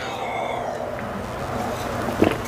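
A man drinking water from an insulated tumbler, with soft, steady sipping and swallowing.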